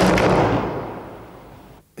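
A door slamming shut: one sharp bang that rings out and fades over about a second and a half.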